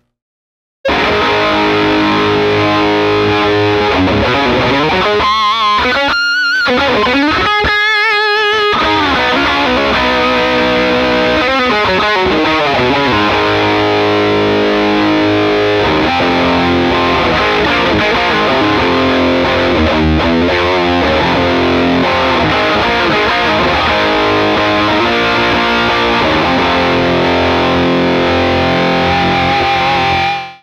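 Les Paul electric guitar through a SonicTone Royal Crown 30, a 30-watt cathode-biased EL84 tube amp with no negative feedback, with channel 2's gain and volume both at ten in hot mode: fully driven tube overdrive, loud, on rock riffs and lead lines. Playing starts about a second in, with bent, vibrato-laden notes around the middle and a held, wavering note at the end.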